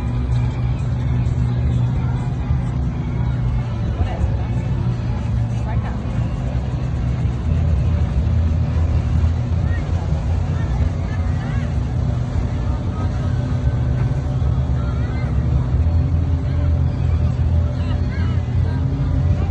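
Outdoor ambience: a steady low rumble with voices of people around mixed in.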